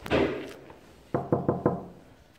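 Knuckles rapping four quick knocks on a wooden apartment door, after a brief burst of noise at the start.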